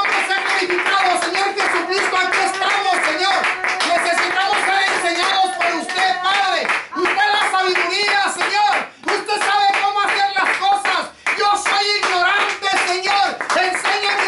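Hand clapping over and over, with a voice calling out in fervent prayer and praise throughout.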